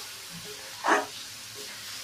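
Steel spoon stirring chana dal and jaggery filling in an aluminium kadhai over a gas flame, with a low steady sizzle of the cooking filling. One short, louder scrape or knock about a second in.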